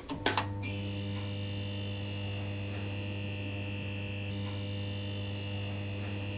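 Steady electrical mains hum with a thin high buzz above it, opened by two sharp clicks at the very start: a sound-effect logo sting.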